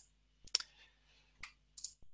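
A few faint, sharp clicks at a computer desk. There are two close together about half a second in, one near the middle and a quick double near the end.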